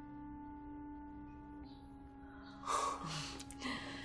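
Soft background score of long held notes that shift slightly lower a little before halfway. About two and a half seconds in comes a short, louder breathy sound, with a second brief one just after.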